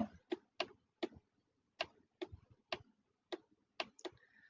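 Faint, irregular clicking, about ten sharp clicks in four seconds, from the pointing device used to hand-write numbers on the computer screen, a click with each pen stroke.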